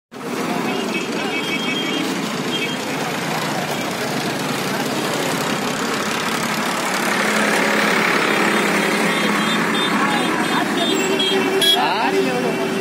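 Busy street traffic with motorcycles and other vehicles running, mixed with many people's voices. Short high beeps repeat in two spells, near the start and again in the second half.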